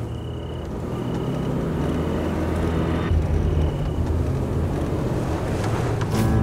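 Car engine running as the car pulls up, growing a little louder in the first second or so and then holding steady. Crickets chirp in short, regularly repeated pulses over it.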